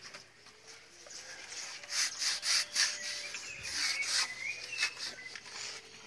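Sandpaper rubbed by hand over dirty wood in short, irregular strokes, starting about two seconds in.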